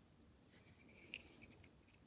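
Near silence, with faint rubbing and one soft tick about halfway through as fingers pick up a small plastic toy kitchen set.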